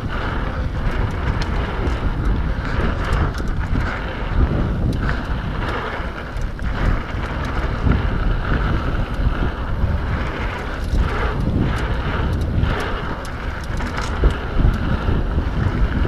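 Wind rushing over the microphone of a camera on a mountain bike descending a dirt singletrack, with tyres rolling over the trail and frequent small clicks and rattles from the bike.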